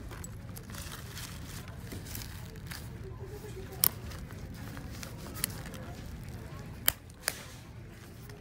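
Gold metal kiss-lock clasp of a small leather coin purse snapping, with four sharp clicks in the second half, amid handling rustle against a steady store background hum.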